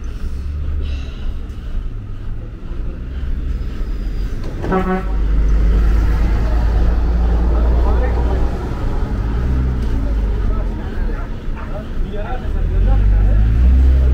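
Diesel being pumped into a truck's fuel tank at a roadside pump: a low steady rumble, louder from about five seconds in, with voices in the background. A short vehicle horn toot sounds about five seconds in.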